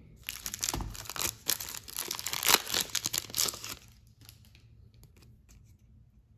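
Foil trading-card pack being torn open and crinkled by hand: a dense run of sharp crackling for about three and a half seconds, then only a few faint rustles.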